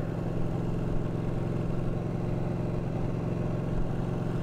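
Ducati 1299 Panigale's 1285 cc Superquadro L-twin engine cruising at a steady speed, its exhaust note holding an even pitch and level.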